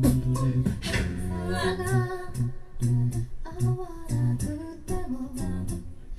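A cappella vocal group singing live: a lead voice and backing harmonies over a sung bass line holding low notes, with beatboxed percussion keeping a steady beat.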